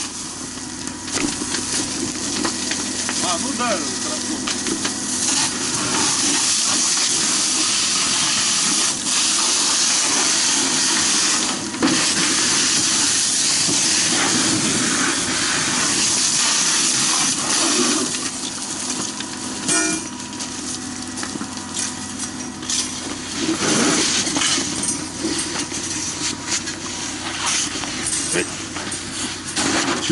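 Fire hose nozzle spraying a water jet onto burning debris, a loud steady hiss with steam rising where the water hits. About eighteen seconds in it eases to a lower, uneven hiss.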